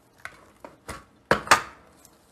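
About five short taps and clicks of small tools being handled on a hard tabletop, the two loudest close together past the middle.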